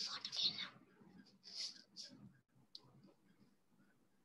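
Faint whispering: a few short, soft hissing sounds like whispered 's' sounds, near the start and again about one and a half to three seconds in.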